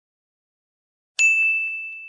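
A single bright, bell-like ding struck once about a second in, ringing on one clear tone and fading away over about a second and a half.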